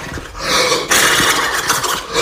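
A harsh, noisy growl of frustration that follows a short dip about a third of a second in.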